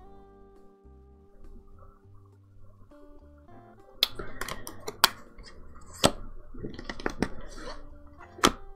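Quiet background music with plucked-guitar notes, then from about four seconds in a run of sharp clicks and slaps from tarot cards being handled and laid on a table.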